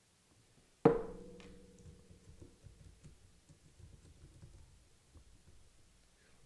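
A single sharp musical hit about a second in, whose pitched tone rings on and slowly fades over several seconds, with faint low sounds beneath it.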